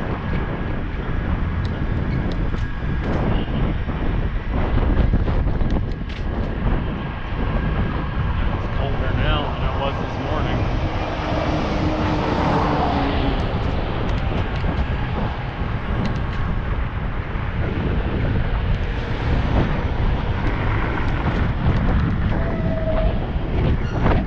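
Wind buffeting a bicycle-mounted action camera as it rides along, over steady road rumble with scattered rattles and clicks. A box truck's engine swells past around the middle.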